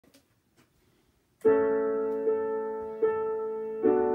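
Piano starting the introduction to a hymn: a few faint clicks, then a chord about a second and a half in, followed by three more chords at an even, unhurried pace, each left to ring and fade.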